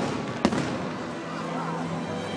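Aerial firework shell bursting with one sharp bang about half a second in, its echo trailing off.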